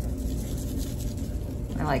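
Seasoning blend shaken from a shaker bottle onto raw pork roasts in a slow cooker crock, a faint soft sprinkle over a steady low hum.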